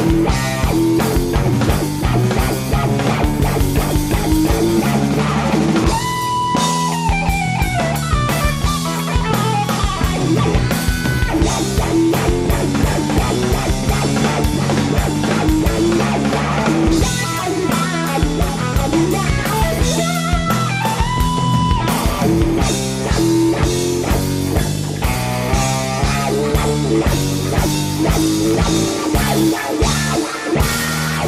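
Live blues-rock trio: a Stratocaster-style electric guitar playing lead over a drum kit and bass. Twice the guitar holds a long sustained note that then bends down in pitch.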